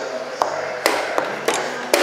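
Chess pieces being set down and knocked on a roll-up board, and the buttons of a digital chess clock being pressed, during fast blitz play: about five sharp taps and clicks in quick succession.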